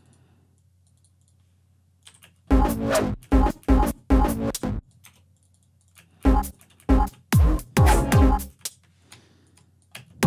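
Chopped neuro bass stabs from a sample pack, played back in groups: about four short, heavy hits starting a little over two seconds in, then a second run of about five hits from about six seconds in, each group separated by near silence.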